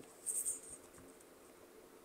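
Near silence: room tone, with one brief faint high hiss about a third of a second in.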